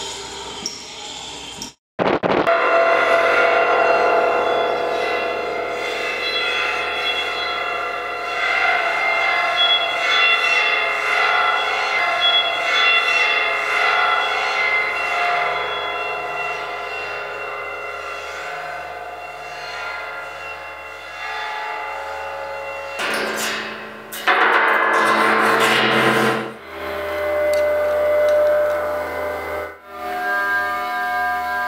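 Experimental improvised ensemble music: a dense layer of many held tones sounding together, cut in after a brief gap. About three-quarters of the way through, a loud noisy rush takes over for a few seconds, then a thinner texture of tones follows.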